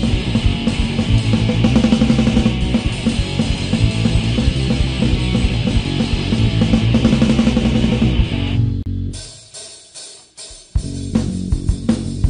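Hardcore punk band playing loud, dense guitar and drums. The music falls away about eight and a half seconds in, then starts again with drums and guitar under two seconds later.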